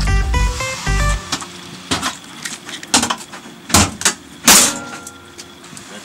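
Background music with quick plucked notes, then four or five sharp hits, the loudest about four and a half seconds in.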